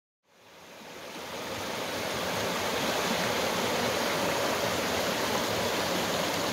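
Shallow stream rushing and rippling over rocks: a steady wash of water noise that fades in over the first two seconds.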